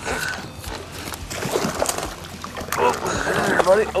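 Unclear words from a man's voice over water lapping against a boat.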